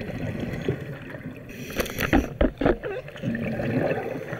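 Underwater bubbling and gurgling, most likely a scuba diver's exhaled bubbles rising past the camera housing. It builds to a burst of loud, irregular surges about halfway through.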